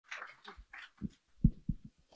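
Microphone handling noise: rustling and about five soft, dull thumps, the loudest about one and a half seconds in, as the microphone is picked up and settled before the speaker checks that she can be heard.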